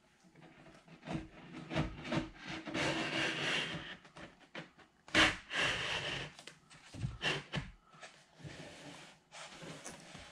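Rocket body tube being worked down over a wooden fin can, the fins sliding into its cut slots: rubbing and scraping with scattered knocks and clicks, the sharpest about five seconds in. The slots are a little tight on the fins.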